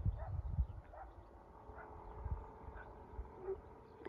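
Low wind rumble on the microphone outdoors, with faint short animal calls repeating about once a second in the distance.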